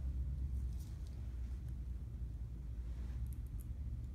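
Quiet room tone: a steady low hum, with a few faint small ticks and clicks from handling.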